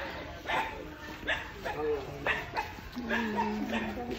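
People's voices outdoors in short, broken calls about every half second to a second, with one held lower voice near the end.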